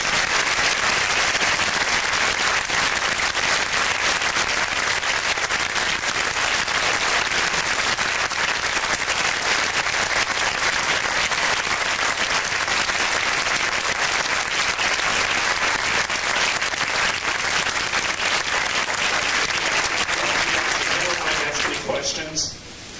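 A large audience in a lecture hall applauding steadily for over twenty seconds after a talk. The clapping dies away right at the end.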